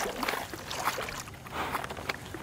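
Horses wading through shallow water, their hooves splashing irregularly.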